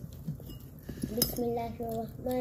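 Fingers tearing paratha on a ceramic plate, quiet handling noises with a sharp clink against the plate about a second in. Right after the clink a voice starts, held on steady notes.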